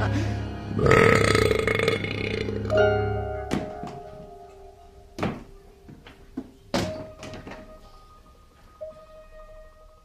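Film soundtrack music: a loud burst about a second in, then held notes and three sharp hits about a second and a half apart, fading down to quiet sustained tones.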